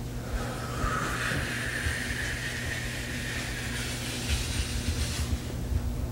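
A person blowing out a long, hissing breath for a few seconds. Behind it are a steady electrical hum and low bumps from movement and handling.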